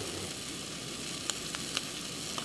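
Food frying in a pan: a steady sizzle with a few faint pops in the second half.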